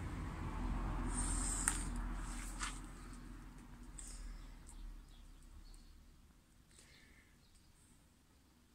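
Water pouring from a plastic watering can's spout onto seedling trays of wet potting soil. It dies away over the first six seconds, with a few faint clicks.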